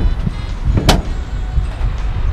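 Car bonnet (hood) of a 2018 Dacia Logan being pushed shut onto its latch: a single sharp metallic thud about a second in.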